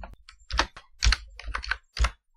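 Typing on a computer keyboard. The keystrokes come in small irregular clusters about every half second as an email address is entered.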